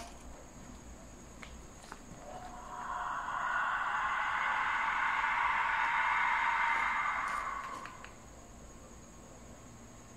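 A clay skull whistle of the pre-Hispanic 'death whistle' kind, blown in one long breath. It gives a rough, hissing shriek that swells in about two and a half seconds in, holds for several seconds and dies away about eight seconds in.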